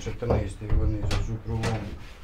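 Someone talking in the background while bread dough is handled on a floured wooden table, with a few soft knocks as the dough balls are pressed and set down.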